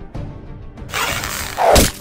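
Sound effect of an arrow shot from a bow: a rushing whoosh starting about a second in, ending in a louder hit just before the end, over background music.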